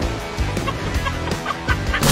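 White domestic turkey giving a quick series of short calls, about six in the second half, as it runs, with background music underneath.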